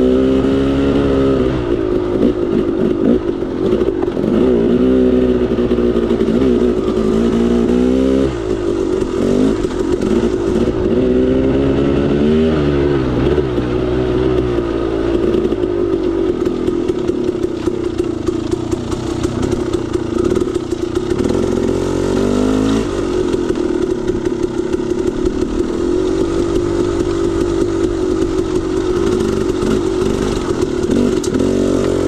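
KTM 300 XC-W's single-cylinder two-stroke engine pulling a dirt bike along a trail, its pitch rising and falling over and over as the throttle is worked, with quick climbs in pitch several times. Some clatter rides along with it.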